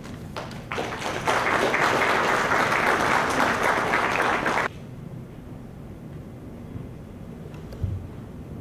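Audience applauding for about four seconds, then cutting off abruptly, leaving quiet room tone with one soft thump near the end.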